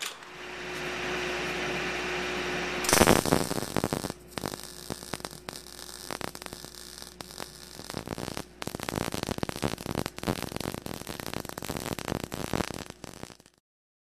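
A steady hiss and hum, then about three seconds in a MIG welder's arc strikes and crackles continuously, with a short break about halfway. The crackle cuts off suddenly shortly before the end.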